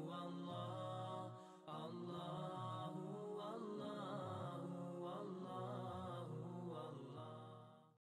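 Outro music of a chanted vocal line with no clear beat, dipping briefly about a second and a half in and fading out at the end.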